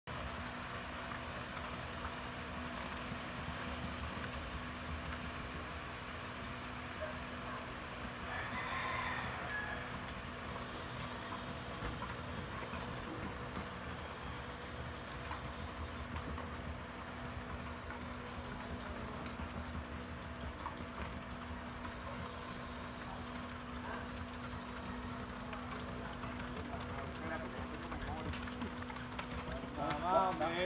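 A horse's hooves clip-clopping on a hard track in an even, repeating rhythm as it is ridden at a steady gait, over a steady low hum.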